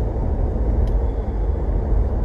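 Steady low rumble of a car on the road, heard from inside the cabin, with a faint click a little under a second in.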